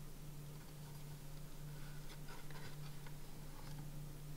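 Faint light scraping and rustling as a coiled USB cable is pulled out of a small cardboard box, over a steady low hum.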